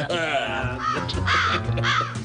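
A man's voice making three short, high, squawking vocal noises about half a second apart, over background music.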